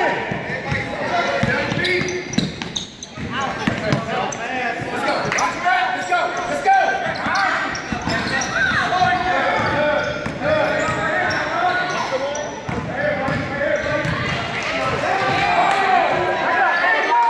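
Basketball game sounds in a large gymnasium: voices of spectators and players calling out throughout, over a basketball bouncing on the hardwood court.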